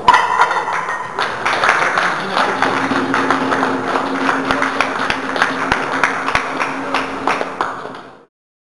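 A loaded barbell is racked with a loud metal clank at the start, then a small crowd claps and cheers for the bench press lift. The clapping fades out at the end.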